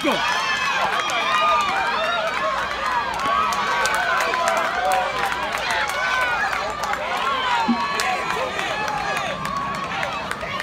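Spectators in a grandstand shouting and cheering on runners, many voices overlapping at once.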